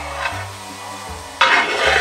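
A long ladle stirring and scraping a heap of grated coconut mixture in a large metal pot, over background music with a slow bass line. A louder, rougher stretch of noise starts about one and a half seconds in.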